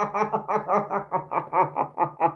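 A man laughing: a steady run of short, rapid chuckles, about six a second, held through the whole breath.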